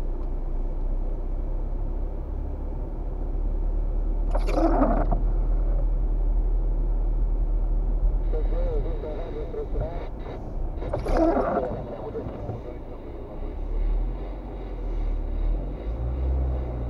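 Car cabin rumble from driving slowly along a wet city street, low and steady, with two brief louder bursts of sound about four and eleven seconds in.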